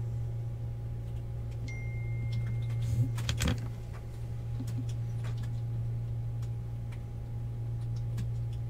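Steady low electrical hum with scattered light clicks and taps, and a short cluster of louder knocks about three and a half seconds in.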